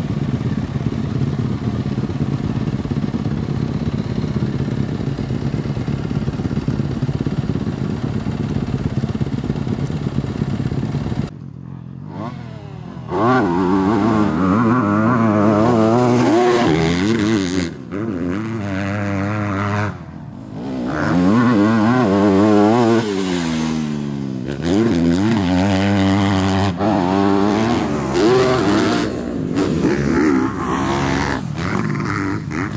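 Yamaha YZ250F four-stroke motocross bike engine. For about the first eleven seconds it runs steadily as the bike warms up. Then, as it is ridden on a dirt track, it revs up and down over and over, the pitch climbing through each gear and falling away between, with short dips as the throttle shuts off.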